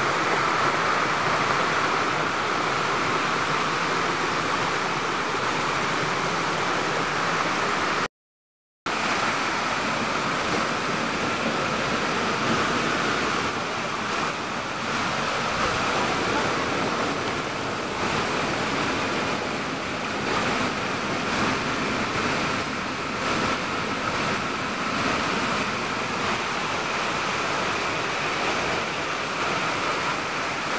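Steady rushing of water cascading over rocks in a small stream waterfall, recorded close up. It drops out to silence for under a second about eight seconds in, then carries on.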